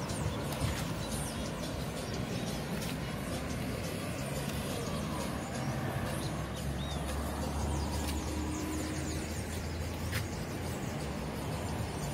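Cars passing on a city avenue, with a louder low rumble as a car goes by from about six to ten seconds in. Small bird chirps sound over the traffic.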